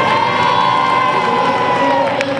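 Crowd cheering, with one long held high note over the noise that sags slightly and stops near the end.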